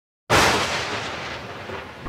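A single sudden boom-like hit about a quarter second in, slowly dying away: a sound effect for the title intro.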